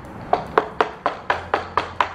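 A rigid hard-plastic scoliosis back brace rapped by hand, a quick run of about seven knocks at roughly four a second. The knocks are there to show how hard the brace's plastic shell is.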